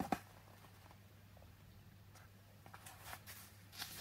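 Faint handling of an open paperback book: a sharp click right at the start, then a few soft paper sounds as the pages are held up and pressed flat, over a low steady hum.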